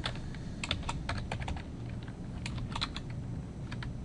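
Computer keyboard keys clicking as a short name is typed, in a few irregular bursts of quick keystrokes.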